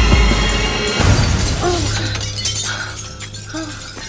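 Glass panel shattering over background music. The crash is loudest in the first second, then the music continues more quietly.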